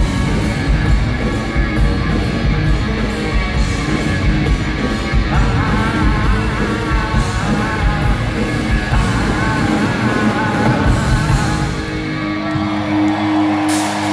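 A rock band playing live, with electric guitars, drums keeping a steady beat on the cymbals and a wavering melody line that comes in about five seconds in. The sound is loud and crowded, as picked up by a phone in the audience. About twelve seconds in the drums drop away and a held chord rings on.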